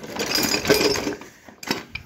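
Metal hand tools rattling and clinking in a soft tool bag as a hand rummages through it: a dense rattle for about a second and a half, then a few separate clicks.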